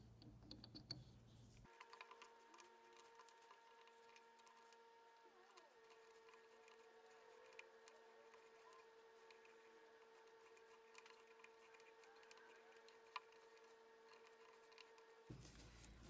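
Near silence: faint room tone with a faint steady hum and a few light ticks.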